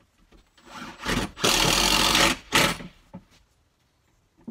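Cordless drill driving a screw through a plywood cabinet into a van roof strut, with the screw grinding into the wood. It comes as a short burst, then a louder run of about a second, then a brief final burst.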